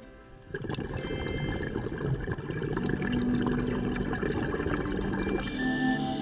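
Exhaled bubbles from a scuba diver's regulator, heard underwater: a rushing bubbling for about five seconds, then a short hiss of the regulator as the diver breathes in near the end. Soft background music with held tones plays underneath.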